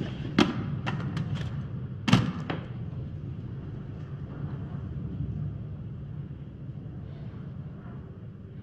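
Two sharp thuds, about half a second and two seconds in, the second louder with a short ringing tail, over a low steady rumble that slowly fades.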